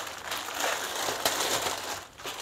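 Thin plastic wrapping around a compressed foam mattress topper crinkling and crackling as it is handled and pulled open.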